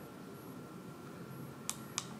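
A keypad button on an Acrel ADW300 energy meter pressed: two short, sharp clicks about a third of a second apart near the end, over faint room hiss. It is the Enter key confirming the entered password.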